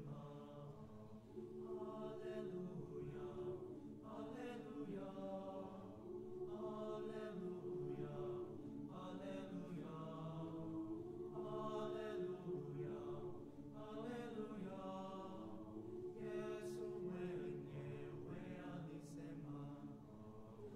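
High school choir singing slow, sustained chords in long held phrases, the harmony shifting every couple of seconds.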